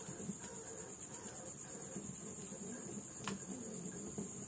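Wood fire burning with a low crackle, under a steady high trill of insects, likely crickets. One sharp pop from the fire about three seconds in.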